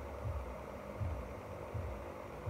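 Low, uneven rumble with a faint steady hum behind it.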